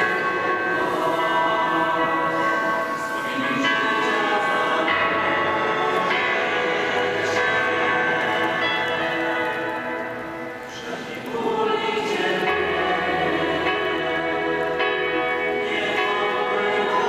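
Slow sacred choral music: voices holding sustained chords over steady low bass notes that change every few seconds, with a brief lull about ten and a half seconds in.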